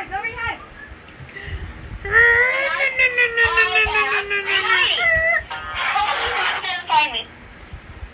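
Voices vocalizing without words, including a long, slowly falling drawn-out sound about two seconds in and a short high squeal about five seconds in.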